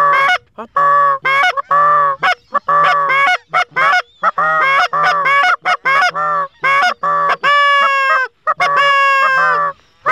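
Goose calls blown in a fast, unbroken string of short clucks and honks, then two longer drawn-out honks near the end, worked to pull circling geese into the decoys.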